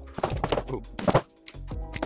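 Boxing gloves striking an Everlast Powercore freestanding punching bag: several punches thudding in quick, uneven succession. Background music plays underneath.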